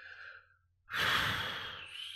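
A man's breath close to the microphone: a faint breath fading out early, then a loud breath about a second in that fades away over about a second.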